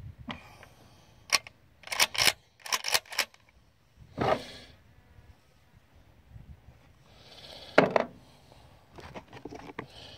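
Clicks and clacks of handling a Mossberg 500 pump-action shotgun and the camera, then a single shotgun shot near the end, the loudest sound here.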